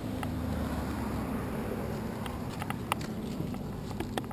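A steady low mechanical hum, with a few light clicks toward the end.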